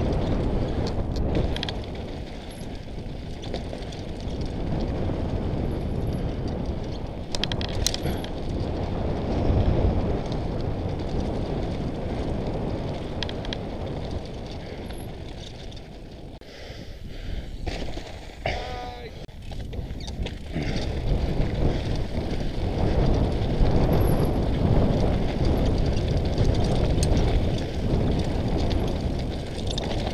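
Ride-along sound of a mountain bike descending a loose, rocky trail: tyres crunching over stones, knocks and rattles from the bike, and a continuous low rumble of wind on the camera's microphone. The rumble eases for a few seconds past the middle.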